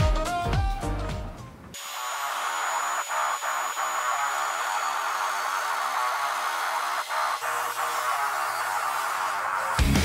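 Background music fades out about two seconds in. Then a corded angle grinder with a thin cut-off disc cuts through the steel top of a beer keg, a steady high grinding whine. The music comes back just at the end.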